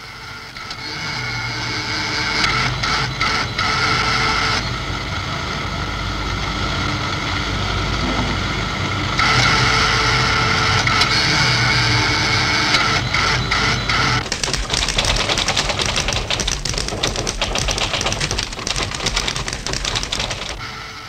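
Early electronic computer equipment running: steady whirring, humming tones that change abruptly twice, then, from about two-thirds of the way in, a fast, dense clatter like a high-speed printer or tape reader.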